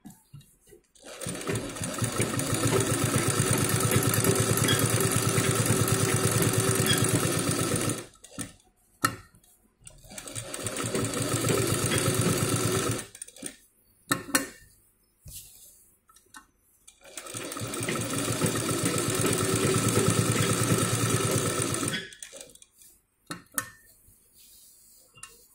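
Domestic sewing machine stitching in three runs, each picking up speed over about a second and then holding a steady, fast stitch rhythm. It stops with short clicks and knocks in between while the fabric is turned for the next line of the quilted pattern.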